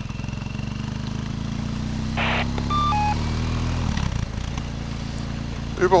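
BMW motorcycle engine running under way, recorded from the bike itself; its note climbs slightly, then drops about four seconds in as the throttle eases or a gear changes. A brief hiss comes about two seconds in.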